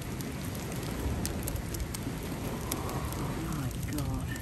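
Land hermit crabs swarming a foil cracker packet: steady crackling with scattered sharp clicks as their shells and legs knock and scrape against coral rubble, shells and the crinkling foil.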